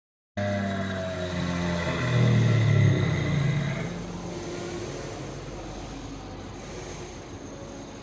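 Animatronic dinosaur's roar played through its built-in speaker: a low, drawn-out growl that starts suddenly, is loudest about two to three seconds in and fades out by about four seconds, leaving a steady low hiss.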